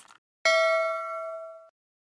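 A short mouse-click sound effect, then about half a second in a bright bell ding with several ringing tones that fade and cut off about a second later. This is the notification-bell sound effect of a subscribe-button animation.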